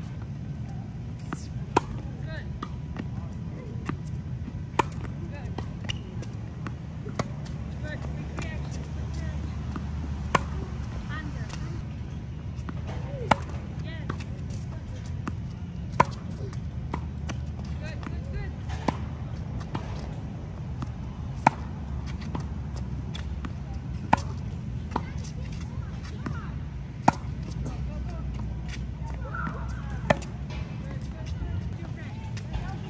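Tennis rally: a racket strikes a ball sharply about every two and a half to three seconds, with fainter hits and ball bounces in between. A steady low rumble runs underneath.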